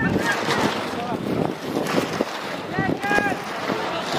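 Wind rushing over the microphone, with players and spectators shouting briefly a couple of times.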